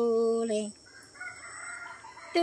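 The close of a woman's unaccompanied Hmong sung-poetry (lug txaj) phrase, a steady held note that stops less than a second in. A faint rooster crow follows in the pause.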